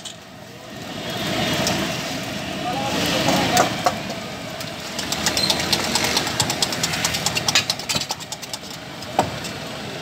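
Busy street-food stall din: background voices and a traffic-like hum. Light clicks and a single knock near the end come from a metal spatula working on the flat steel griddle where eggs are frying.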